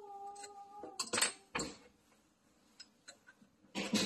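Metal clinks and scrapes of an Allen key against the underside of a garbage disposal as it is worked into the hex socket to turn the jammed motor by hand. Louder scrapes come about a second in and near the end, with a few light ticks between.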